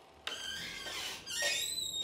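A door opening with a thin, high squeak that wavers in pitch, starting just after a moment of silence.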